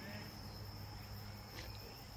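An insect, most like a cricket, singing one steady, faint, high-pitched note without a break, over a low steady hum.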